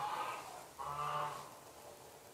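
An animal calling twice, each call about half a second long and less than a second apart.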